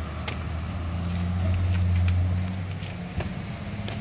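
A motor vehicle engine running with a low, steady hum that rises a little in pitch and grows louder about a second in, then eases off, with a few faint clicks.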